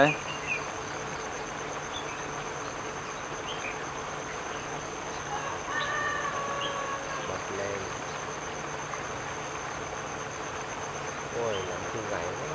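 Steady high-pitched insect buzzing, two constant tones, one of them pulsing, with a few faint short bird chirps scattered through.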